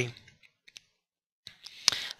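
A pause between spoken phrases: the last word ends, then a couple of faint clicks, a soft hiss, and one sharper click just before the voice starts again.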